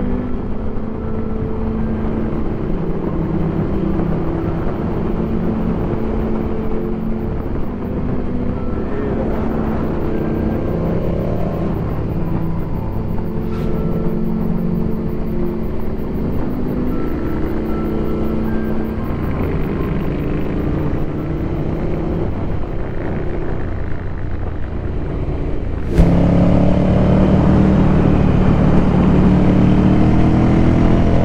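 Ducati Scrambler's air-cooled L-twin engine running at road speed with wind noise, mixed under background music; its pitch climbs briefly as the bike accelerates. Near the end the engine suddenly comes in louder, with revs rising as it pulls.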